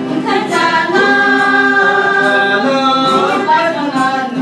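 Mixed voices of a small family group, men, women and children, singing a hymn together into a microphone, with a long held note through the middle.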